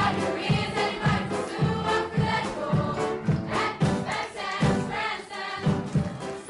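A cast of young voices singing in chorus over stage-show backing music, with a steady low beat of about two a second.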